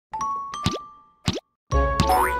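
Cartoon logo jingle sound effects: two bright chime notes that ring on, with two quick upward-sliding pops. A short silence follows, then a children's song begins just before the end.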